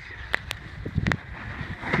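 Low rumble of wind on the microphone, with a few faint clicks.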